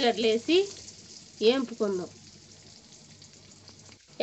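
Hot oil sizzling faintly in a steel kadai as small shallots are added, under a voice speaking twice briefly in the first half.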